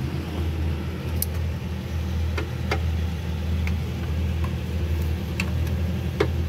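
Hyster forklift's engine idling steadily, with a few sharp clicks scattered over it.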